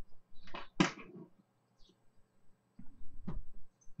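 Handling noise as the power to a small ATtiny85 breakout board is unplugged and reconnected: a sharp knock or rustle about a second in, then a low rub ending in a sharp click a little after three seconds.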